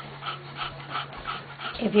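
A litter of 19-day-old English Bulldog puppies whimpering, a quick run of short, soft cries several times a second.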